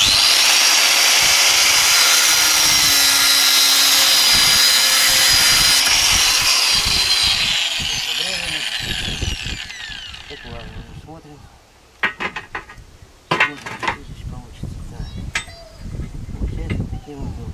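Angle grinder running at full speed, cutting through the steel rod of a handmade hacksaw frame. About seven seconds in it is switched off, and its disc winds down with a falling whine. A few short knocks follow near the end.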